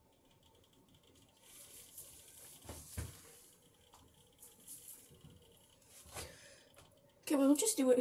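Faint handling and rustling noises with a soft knock about three seconds in; a person's voice begins near the end.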